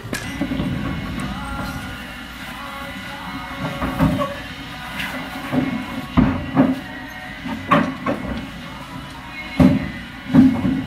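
Background music, with several short low thumps scattered through it.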